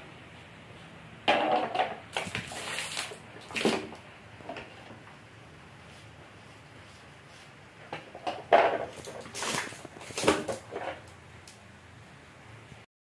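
Rigid plastic car pillar trim panels being picked up and handled, clattering and scraping in two irregular bursts of a few seconds each, one starting about a second in and another in the second half.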